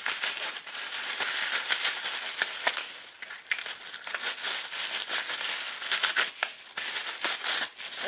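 Tissue paper crinkling and rustling as a wrapped item is unwrapped by hand, a busy run of crackles with brief lulls about three seconds in and again just after six.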